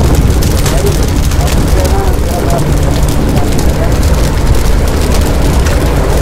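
A loud, steady low rumble around a large blazing fire, with people's voices calling in the background.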